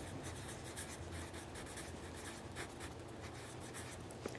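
Pencil writing on paper, faint scratching strokes as a word is written out.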